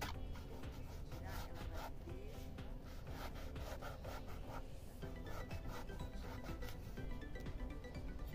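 A kitchen knife slicing through a striped eggplant and striking a bamboo cutting board in a run of repeated strokes, with background music underneath.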